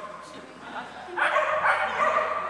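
A dog barking during an agility run, the barks louder from a little past the middle, mixed with people's voices.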